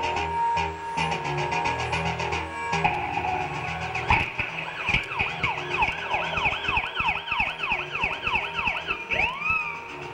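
Live band music with keyboards and guitars. From about five seconds in, a siren-like swoop falls in pitch over and over, two to three times a second, and ends in a single rise and fall near the end.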